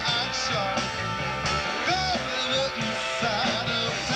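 Live funk band playing an instrumental passage: electric bass, electric guitar, drums and a horn section of trumpets and saxophones over a steady groove, with a lead line of bending notes on top.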